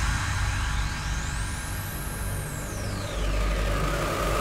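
Hard trance music in a breakdown without drums: a held bass under a synth sweep that rises steadily in pitch and falls back again over about three seconds.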